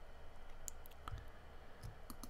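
A few faint, separate computer mouse clicks over a low, steady background hum.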